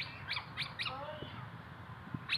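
Faint, short bird chirps, a few brief gliding calls about a second in, over quiet outdoor background.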